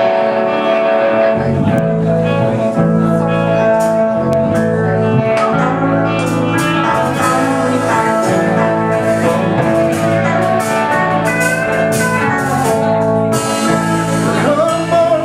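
A live folk-rock band playing the instrumental intro of a song. Electric guitar leads, with bass and drums coming in about a second and a half in, over pedal steel guitar.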